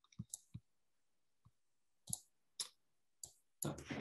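Faint, scattered clicks, about six spread over a few seconds, with near silence between them.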